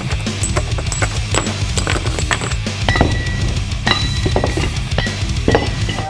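Music with a heavy bass beat and many sharp percussive hits, ending abruptly.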